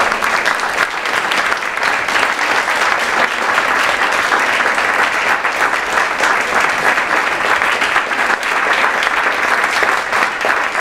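Audience applauding, a steady dense patter of many hands clapping.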